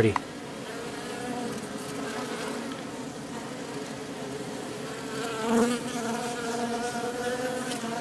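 Honeybees buzzing around an open top bar hive in a steady hum that swells and wavers about five and a half seconds in as a bee passes close. They are defensive guard bees, angry and flying around the beekeeper.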